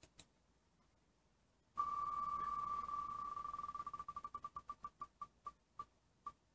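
Online spinning-wheel picker's ticking sound effect played through a laptop speaker, a small click and then, about two seconds in, rapid high ticks so fast they blur into one beep-like tone. The ticks slow down steadily as the wheel decelerates.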